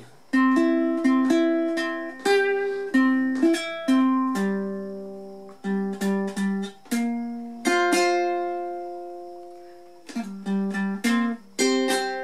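Ukulele picking out a single-note melody over a C chord shape, each note plucked and left to ring and fade, with a quick run of several notes near the end.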